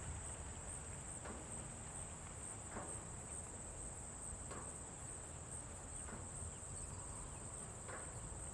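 Faint, steady high-pitched insect trill, typical of crickets.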